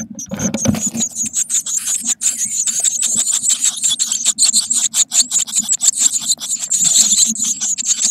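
Eurasian blue tit nestlings begging for food, a dense rapid chatter of high-pitched calls that starts abruptly and keeps on as the parent feeds them. A steady low hum runs underneath.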